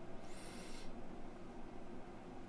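Quiet room tone with a faint steady low hum, and a brief soft hiss lasting about half a second near the start.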